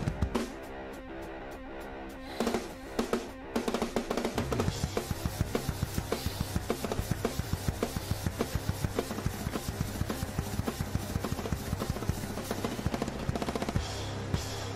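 Drum kit played along with a backing track. The first few seconds hold a few scattered hits around a short lull. From about four and a half seconds in come rapid, even strokes over a steady bass line.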